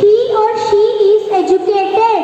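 A boy's voice delivering a line in a sing-song, with long held notes and short glides between them.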